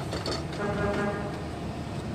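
1857 Hill and Son pipe organ holding one steady note, rich in overtones, that comes in about half a second in.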